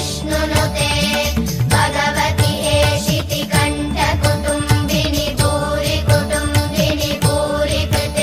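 Background music with a steady beat of low drum strokes that bend in pitch.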